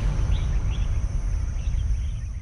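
Outdoor grassland ambience: a few short bird chirps over a steady high-pitched insect drone and a low rumble.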